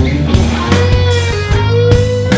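Live blues-rock band playing a song's instrumental intro: electric guitar lead over bass and drums, with a note bent up and held in the second half.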